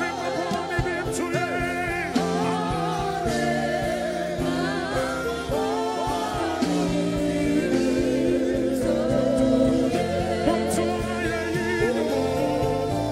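Live gospel worship music: several voices singing with vibrato over sustained keyboard chords and a band.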